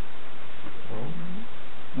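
A short vocal sound rising in pitch, about a second in, over a steady hiss of background noise.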